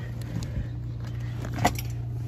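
Toyota car door being opened from inside: the interior handle is pulled and the latch releases with one sharp click about one and a half seconds in, over a steady low hum.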